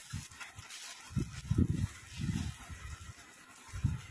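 Handling noise on a phone's microphone as the phone is moved about: irregular low rumbling bumps, several a second, with a faint rustle.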